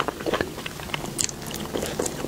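Close-miked eating sounds of a soft, doughy purple bun being chewed and bitten into: a quick, irregular run of wet mouth smacks and clicks.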